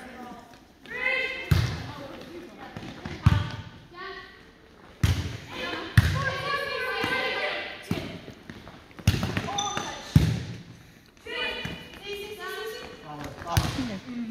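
Volleyball impacts in a large gym: the ball is struck by players' hands and lands on the hard floor, about seven sharp thuds spaced a second or two apart, with players' voices between them.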